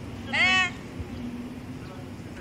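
A single short, high-pitched vocal call about half a second in, its pitch arching up and then down, over a steady low hum.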